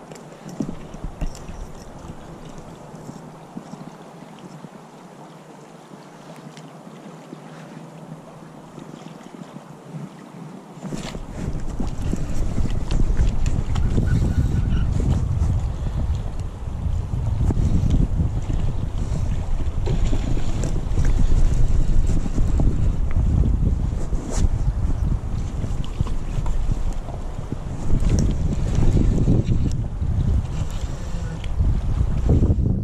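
Steady hiss of a shallow creek running over gravel. About eleven seconds in, wind starts buffeting the microphone, adding a much louder low rumble that carries on to the end.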